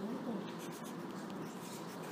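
Quiet classroom background: light scratching and rustling, like pencils writing on paper, with faint voices just at the start and a few soft ticks about half a second in.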